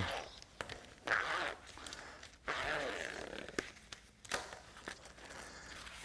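The two halves of a large molded-plastic zipper, with no slider on it, being pulled apart by hand. The teeth unmesh in a few short bursts, with canvas tape rustling between them.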